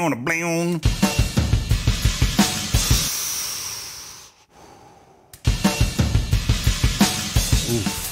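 Multitrack drum recording of a rock kit playing kick and snare hits, then a China crash cymbal struck and ringing out, fading to a gap of about a second before kick and snare come back in.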